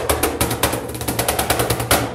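Live acoustic jazz quartet: a fast run of percussion strokes, several a second, over low sustained bass notes.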